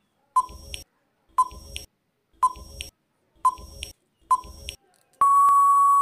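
Countdown-timer sound effect: five short beeps, about one a second, then a long steady beep near the end that signals time is up.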